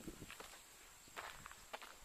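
A few faint footsteps climbing outdoor wooden-sleeper steps over dry grass and fallen leaves.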